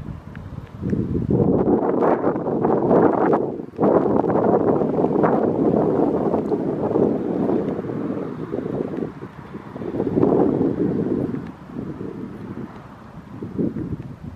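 Wind buffeting a handheld microphone outdoors, coming in uneven gusts. It swells about a second in and stays strong for several seconds, breaks off sharply for a moment near four seconds, swells again around ten seconds, then fades.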